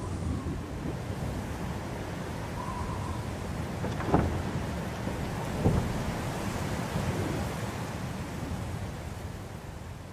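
Rumbling stormy ambience of wind and rain, with no music. Two short, sharp thumps come about four and five and a half seconds in.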